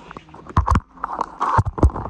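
Handling noise on the phone's microphone as it is set up on a tripod: rubbing and several sharp knocks and thumps.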